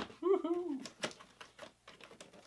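A brief wordless vocal sound, then a few light clicks and scrapes as a styrofoam-packed block is slid out of its cardboard box by a handle, with two sharper clicks about a second in and again half a second later.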